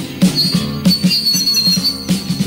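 Post-punk rock song in an instrumental passage between vocal lines: a driving drum and bass beat, with a thin, high, wavering tone coming in about half a second in and holding to the end.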